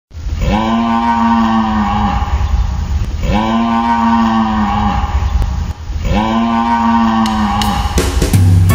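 A cow mooing three times, each a long call of about a second and a half, with a low rumble underneath.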